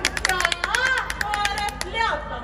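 Women singing a Punjabi folk song in a high chorus over quick, steady hand claps keeping the giddha rhythm. The claps and voices break off abruptly at the very end.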